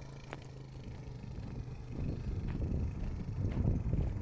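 Suzuki LT-Z400 quad's single-cylinder four-stroke engine running as it is ridden toward the microphone, a steady low hum at first that turns into a louder rumble from about halfway through.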